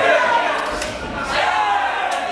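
Men shouting in an echoing gym hall: spectators and corners calling out during a full-contact kickboxing bout, with a couple of sharp smacks about a second in.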